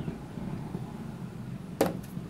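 A drinking glass set down on a hard ledge with a single sharp clunk near the end, over a steady low background hum.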